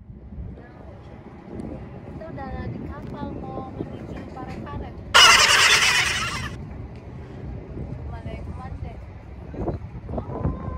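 Low steady rumble of a small river ferry under way, with wind and faint voices in the background. About five seconds in, a loud hiss lasts about a second and a half.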